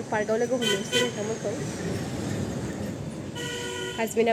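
A vehicle horn honking: two short toots about a second in, then a longer steady toot near the end, with traffic noise between them.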